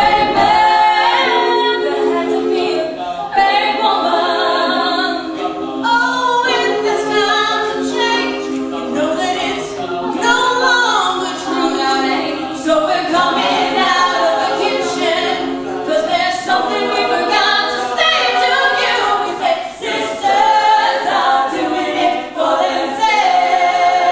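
All-female a cappella group singing in several voice parts, with sustained backing notes under a moving melody line, unaccompanied by any instrument.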